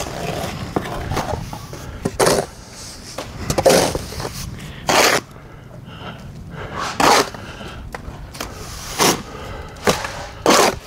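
Steel plastering trowels scraping wet stucco base coat off a mortar board and hawk and spreading it onto a wall, in short, harsh scrapes every second or two.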